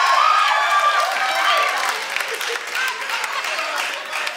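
Live comedy audience laughing and applauding, many voices overlapping with scattered claps, easing off about halfway through.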